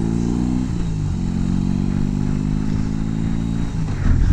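Motorcycle engine heard while riding, with wind and road noise. The engine note dips about a second in, then climbs gradually as the bike pulls away.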